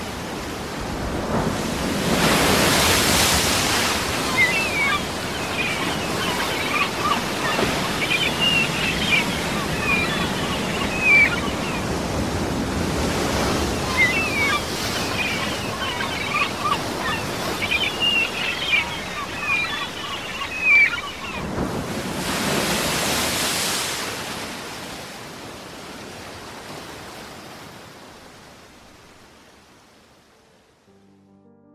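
Ocean surf ambience as a sound effect: a steady wash of waves, with a wave swelling up about two seconds in and again past the twenty-second mark. Short high chirps run over it through the middle, and it fades out toward the end.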